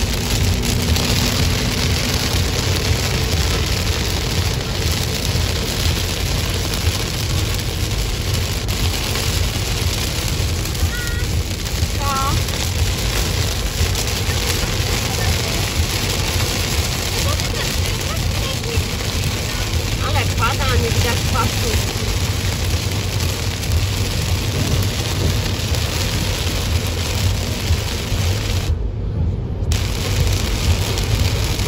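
Steady road noise inside a car driving on a wet motorway in the rain: a low rumble of tyres and engine under the hiss of rain and road spray.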